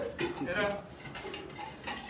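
Stainless-steel caguama holder (a metal sleeve for a large beer bottle) being handled and opened: a few light metallic clinks and scrapes, with a sharper click near the end.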